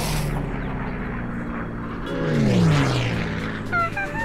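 Cartoon sound effects of a character flung through the air: a rushing whoosh with a descending pitch glide about halfway through, then a brief yelp near the end as he lands.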